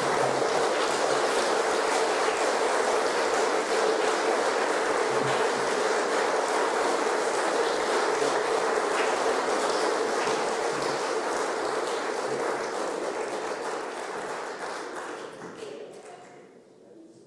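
Audience applauding, steady for most of the time and then dying away over the last few seconds.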